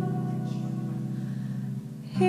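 Kanklės, a Lithuanian plucked zither, ringing out a sustained chord of low notes that slowly fades, with the notes dying away briefly near the end.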